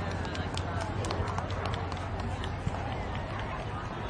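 Running footsteps of a handler jogging a Briard across grass, over spectators' low chatter and a steady low hum.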